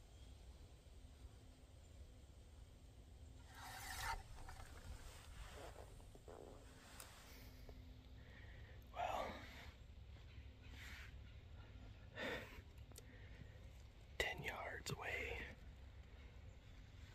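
A man whispering in a few short phrases with pauses between them.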